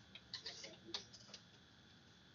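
A few faint, short clicks in the first second and a half, then near silence with a faint steady room hum.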